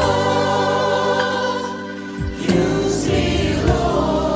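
Mixed choir of men and women, recorded separately and mixed as a virtual choir, singing a gospel song: a held chord, then a new phrase that enters about two and a half seconds in.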